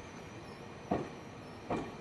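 Wheels of a Tobu 50090-series electric train knocking over a rail joint as the train rolls past, with two sharp clunks a little under a second apart over a steady low rumble of the running gear.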